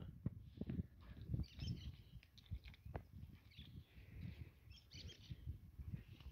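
Faint bird chirps in short bursts, a few times over the stretch, with a low rumble and small clicks underneath.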